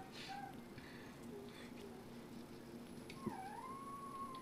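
Quiet room with a low steady hum and faint handling ticks. About three seconds in, a high drawn-out whining call begins, dips, then rises and holds.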